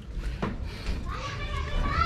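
Background speech from high-pitched voices, like children's voices, with a short click about half a second in.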